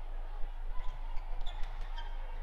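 Badminton play on an indoor court: light taps and shoe squeaks on the court mat over a steady low hum.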